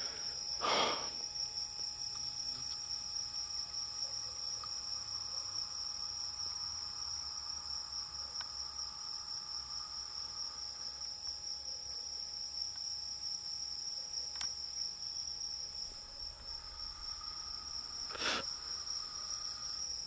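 Night insects, crickets or similar, giving a steady, unbroken high-pitched trill, with a fainter lower trill coming and going. A brief noise breaks in about a second in and again near the end.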